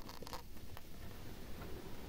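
Fingers scratching and rubbing against the clear plastic blister packaging of a boxed toy furniture set: a few short scratchy strokes, the strongest at the very start, then fainter ones.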